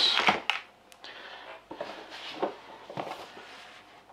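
Cardboard packaging being handled: a box and its cardboard insert scraping and rustling on and off, with a few light knocks.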